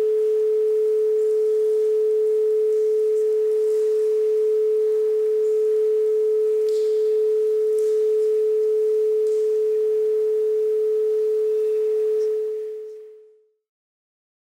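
A single steady, pure mid-pitched tone, held at an even level with no decay, then fading out near the end.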